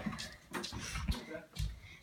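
Handling noise and footsteps as a phone is carried through a house: scattered knocks and rubbing, with a brief faint voice-like sound about a second and a half in.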